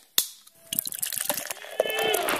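A single sharp click, then scattered faint clicks and faint voices, with people talking in a room fading in near the end.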